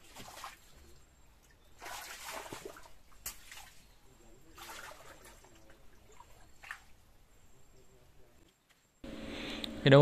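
Shallow ditch water sloshing and splashing in a few short bursts as someone wades through it and handles a submerged cylindrical mesh shrimp trap.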